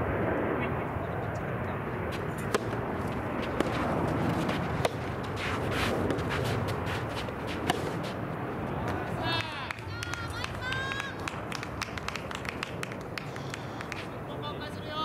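Rackets striking a rubber soft-tennis ball in a rally, sharp pops about a second apart, over a steady outdoor murmur. About nine seconds in, voices shout out.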